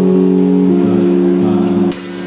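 Live band music: a sustained chord held steady for over a second and a half, with two sharp drum or cymbal strikes near the end.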